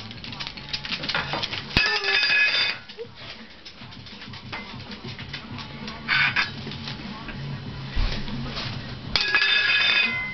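Small metal toy cookware clanging: a sharp strike about two seconds in that rings for about a second, a shorter clatter around six seconds, and another strike with loud metallic ringing near the end.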